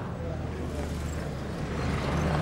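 A low, steady engine hum from a motor vehicle, with indistinct voices around it.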